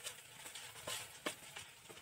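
Faint sizzle of chopped onions and green chillies frying in oil in a nonstick pan, with a few scattered soft pops.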